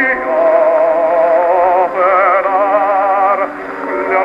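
Operatic tenor with orchestra from a 1909 acoustic Gramophone Monarch record, played on an EMG Mark Xb horn gramophone with a smoked-bamboo needle. The voice holds long notes with wide vibrato, moves to a new note about two seconds in, and dips briefly near the end.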